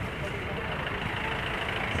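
Steady outdoor background noise with a constant low rumble and no distinct events.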